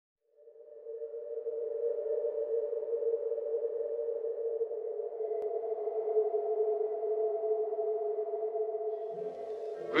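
Sustained electronic drone of two steady low tones fading in from silence, the opening of an electronic downtempo track; a faint higher tone joins about halfway through.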